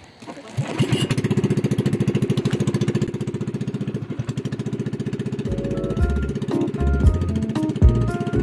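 Pump boat's engine running with a fast, even chugging, fading up over the first second. Background music with a bass line and melody comes in over it a little past halfway.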